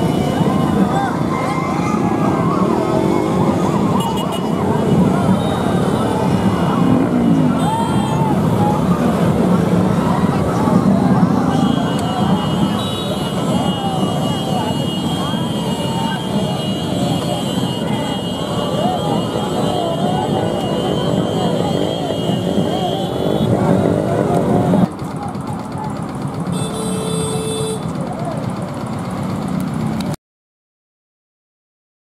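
A crowd of motorcycle riders shouting and cheering over the steady rumble of many motorcycle engines, with a steady high tone for about ten seconds in the middle. About 25 s in, the sound abruptly drops to quieter crowd voices.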